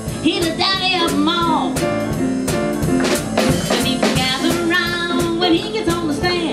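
Live boogie-woogie: grand piano and drum kit playing a driving beat, with a woman singing over them.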